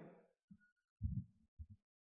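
A pause in a man's speech: his voice trails off at the start, then there are three faint, short, deep thuds, about half a second apart.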